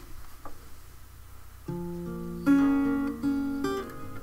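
Acoustic guitar beginning to play: after a faint hiss, single plucked notes start a little before halfway through and ring on, growing louder about two and a half seconds in.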